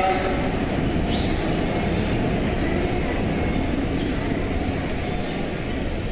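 Tobu 70000 series train pulling out of the station alongside the platform as an out-of-service train, a steady rumble of wheels on rail with a brief high squeal about a second in.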